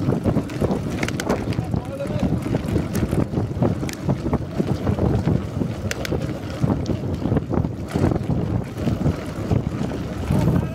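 Heavy wind buffeting on the microphone of a handlebar-mounted camera on a road bike moving at speed, a loud, constantly fluttering rumble.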